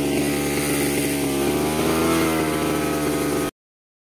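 Petrol brush cutter (grass cutter) engine running steadily at speed, its pitch wavering a little; the sound stops abruptly near the end.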